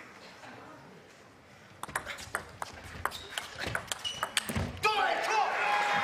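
Table tennis ball clicking off bats and table in a quick rally of a dozen or so hits, starting about two seconds in after a short quiet. Near the end the point finishes and the crowd breaks into cheers and rising applause.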